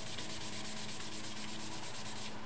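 A sponge scrubbed back and forth over cardstock in quick, even strokes, blending ink onto the card.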